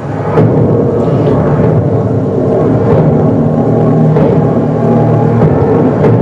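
Television drama soundtrack playing loudly: a steady low rumble with sustained low tones, like a dramatic score, and a few faint knocks.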